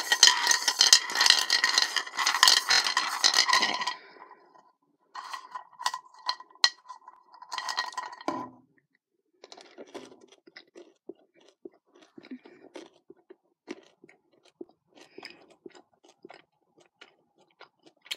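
Cadbury Mini Eggs rattled around in a bowl, their hard sugar shells clicking and scraping against it for about four seconds, with a second shorter burst of rattling. After that comes faint, scattered crunching as one mini egg is chewed.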